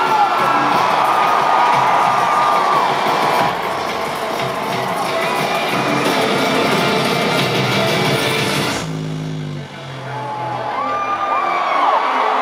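Loud live rock band music heard from within a cheering, whooping crowd. About nine seconds in the full sound drops away abruptly, leaving a few low stepping synth notes before the band and crowd come back up.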